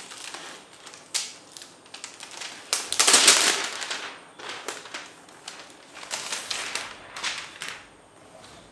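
Clear plastic wrapping crinkling and rustling as it is peeled off a laptop, in a run of irregular bursts with the loudest, longest one about three seconds in.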